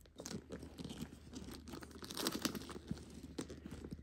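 Close handling noise from a leather handbag with metal chain handles being moved on a quilt: irregular rustling with scattered light clicks.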